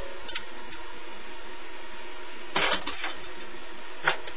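Metal spoon clinking and scraping against a stainless-steel skillet while stirring ground beef simmering in broth. A few sharp clinks come near the start and a short cluster of knocks past halfway, over a steady hiss.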